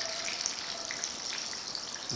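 Battered vegetable pakoras deep-frying in hot oil in a karahi: a steady sizzle with small crackles.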